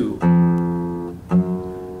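Nylon-string classical guitar: two single notes plucked one after the other, about a second apart, each ringing and fading. The left hand frets them with its first finger, then its second, as a finger-dexterity exercise.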